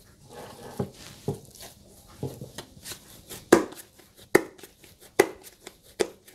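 Soft slaps and squelches of risen yeast dough being pulled from a dish and patted between the hands, with three sharper slaps in the second half.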